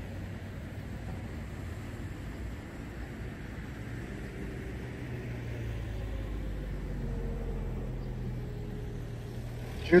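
Outdoor car-park ambience: a steady low rumble of distant traffic, with a faint car engine swelling and passing from about four to eight seconds in.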